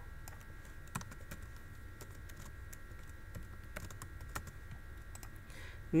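Faint, scattered clicks of typing on a computer keyboard and clicking a mouse, over a low steady hum.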